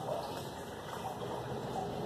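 A pause in speech: steady, even background noise of the room.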